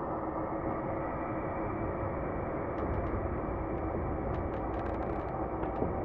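Steady low rumbling ambient noise, with a scattering of faint ticks through the second half.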